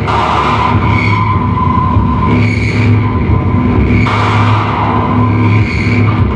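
Live industrial techno played on hardware synthesizers and drum machines: a dense, pounding bass pulse under harsh hissing noise washes that surge in at the start and again about four seconds in, with a high ringing synth tone that recurs throughout.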